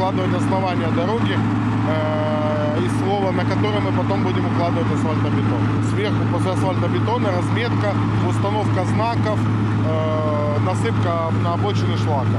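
A man talking over a steady low engine drone that runs unchanged underneath his speech.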